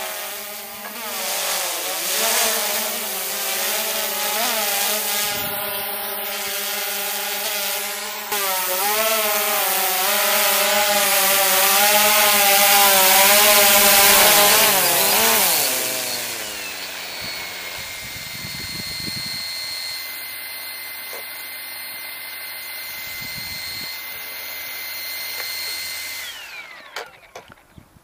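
Hubsan X4 Pro H109 quadcopter's motors and propellers buzzing as it comes down and hovers close, the pitch shifting up and down with the throttle. The buzz is loudest while the drone is caught and held by hand about 12 to 15 seconds in, then drops away to a steady high whine that stops near the end.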